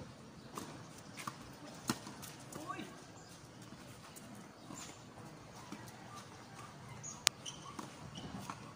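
Tennis ball struck by rackets and bouncing on a hard court: three or four sharp pops in the first two seconds, then a single louder pop near the end. Faint distant voices in between.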